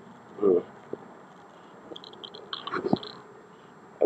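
A mostly quiet pause broken by a brief murmured vocal sound about half a second in, a couple of light clicks, and a run of faint high chirps a little after two seconds.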